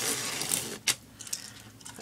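Martha Stewart circle cutter's blade scraping as it is swept around the ring template, scoring paper laid on glass, for about the first second; then a sharp click and a few faint ticks.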